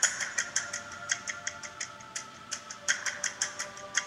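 Background music: quick, clock-like ticking, about six ticks a second, over held synth notes, with a hissing swell about three seconds in.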